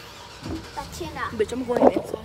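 A girl's voice making short wordless vocal sounds that grow louder toward the end.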